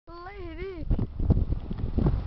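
A high, wavering vocal call lasting under a second, its pitch rising and falling twice. It is followed by low wind rumble on the microphone and a few short knocks.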